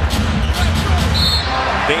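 A basketball being dribbled on a hardwood court, a few separate bounces over the steady low rumble of the arena.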